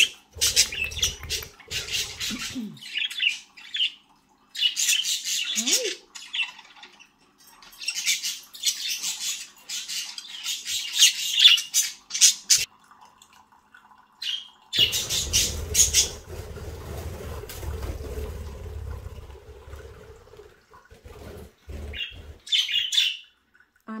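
Pet budgerigars chattering and squawking in repeated bursts of high-pitched sound, with short gaps between. A steady low hum comes in about fifteen seconds in and runs for about six seconds.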